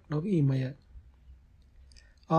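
A man's voice reading aloud in Sinhala: one short word, then a pause of near silence with a few faint clicks.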